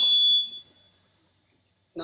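A single high-pitched steady tone, loudest at the start and fading away within about a second, then near silence.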